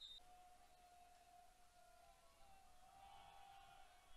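Near silence, with a faint held tone running through it.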